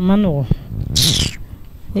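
A person's voice: a short vocal sound that falls in pitch, followed about a second in by a brief sharp hiss.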